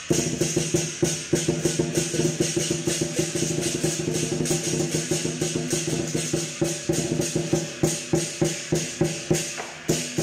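Lion dance percussion: a drum beaten in a fast, steady beat with clashing cymbals over it, and a few low tones ringing steadily.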